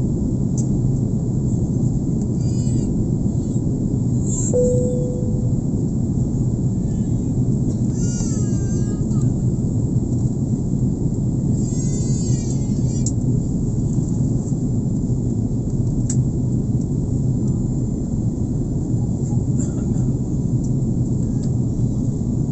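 Steady cabin drone of an airliner in flight: jet engines and rushing airflow heard from inside the cabin at a window seat. Over it come a few brief high-pitched vocal calls, and a single short ringing tone about four and a half seconds in.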